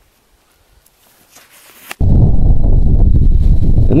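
Near silence for about two seconds, then wind buffeting the microphone outdoors, starting suddenly and loudly as a deep rumble.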